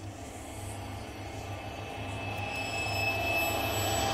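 Cinematic riser sound effect of an animated logo sting: a low rumble with thin high tones entering about halfway, swelling steadily louder.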